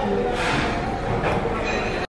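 Steady background din of a busy dining room: a low rumble with a distant mix of voices and clatter.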